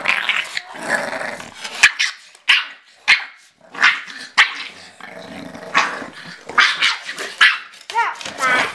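An English bulldog mother and her puppy play-fighting, with irregular growls and short barks coming in bursts and brief pauses between them.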